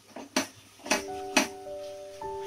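Metal spatula knocking and scraping against a stainless steel kadai as a tomato masala is stirred, with three sharp clinks. Background music with sustained chord notes comes in about a second in.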